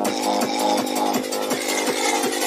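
Techno music: a sustained synth chord over a fast, steady kick drum, about four beats a second.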